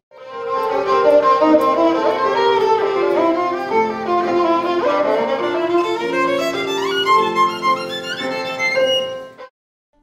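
Violin playing a classical melody in sustained notes with a few quick upward slides, breaking off suddenly about half a second before the end.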